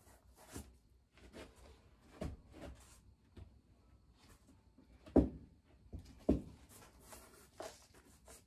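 Handling noise as potting soil is scooped in a plastic tub and plastic cups are picked up and filled: soft rustling and scraping with scattered small clicks, and two sharp knocks about five and six seconds in.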